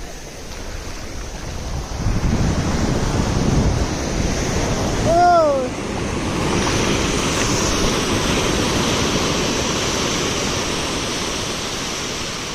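Ocean surf breaking and washing up the shore, growing louder about two seconds in. A short falling cry rises above it about five seconds in.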